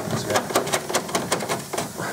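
A quick, uneven run of light clicks and taps, about six a second, that fades near the end.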